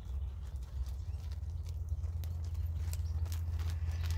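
Hoofbeats of a ridden horse trotting on an arena surface, the footfalls becoming clearer over the last two seconds as the horse comes close.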